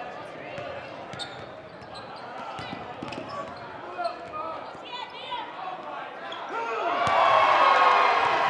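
A basketball dribbling on a hardwood gym floor, with sneakers squeaking, over a murmuring crowd. About seven seconds in, the crowd breaks into loud cheering and shouting.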